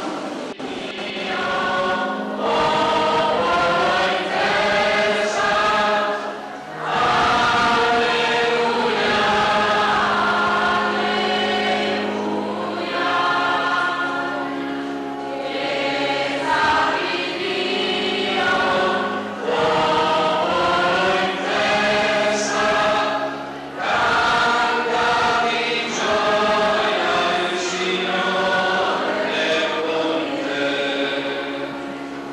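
A choir singing a sacred chant-like piece in several sustained voices, phrase by phrase, with brief pauses between phrases.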